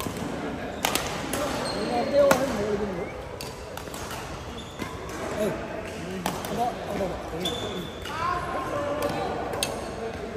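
Badminton rally: sharp, irregular hits of rackets on the shuttlecock, with a couple of short high shoe squeaks on the court floor.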